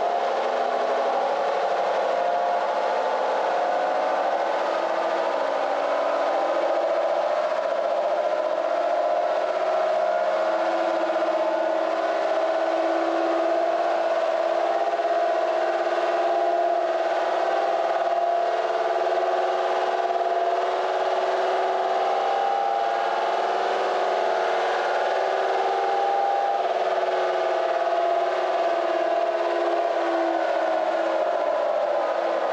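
Supercharged 5VZ-FE V6 in a Toyota Tacoma running on a chassis dyno at a fairly steady speed, giving an even, continuous whining tone whose lower pitch shifts slightly every few seconds.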